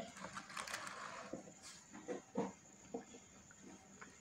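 Faint handling sounds of bottles and a funnel on a tabletop: a soft rustle, then a few light knocks.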